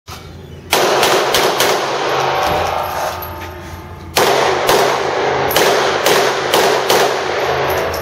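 Handgun shots echoing in an indoor range during an IDPA stage: a quick string of about four shots, a pause of about two and a half seconds, then shots about every half second.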